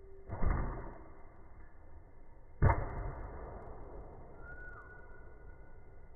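Longbow being shot at a target: two loud, sudden thumps about two seconds apart, the second sharper and louder.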